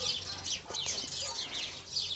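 Small birds chirping: a steady run of short, high chirps, each sliding down in pitch, several a second.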